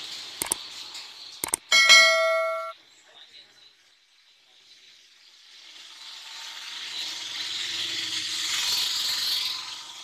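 Subscribe-button animation sound effect: two mouse clicks, then a bright bell ding with several overtones that lasts about a second and cuts off sharply. Later a rushing noise swells up and fades near the end.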